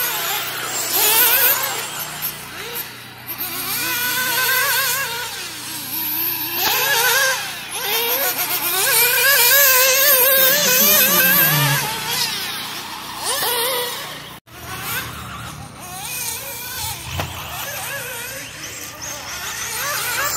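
High-revving nitro engine of a 1/8-scale RC buggy (Alpha Dragon 4) running laps, its pitch rising and falling rapidly as the throttle is worked through the corners and jumps. The sound breaks off for a moment about fourteen seconds in, then goes on quieter.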